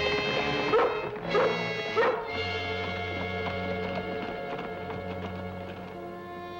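Orchestral TV score music with three short canine yelps, each rising and falling in pitch, about half a second apart in the first two seconds; the music then settles into long held chords.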